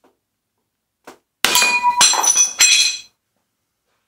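A cheap glass cutter working a quarter-inch-thick mirror: three harsh strokes about half a second apart, starting about a second and a half in, with the glass ringing clearly through them.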